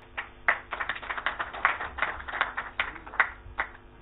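Audience applause: a modest crowd clapping unevenly, the individual claps distinct, fading out near the end.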